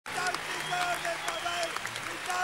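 Audience applauding, many hands clapping, with voices calling out in the crowd.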